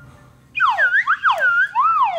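A slide whistle blown in rapid, frantic swoops up and down in pitch. It starts about half a second in, after a brief hush.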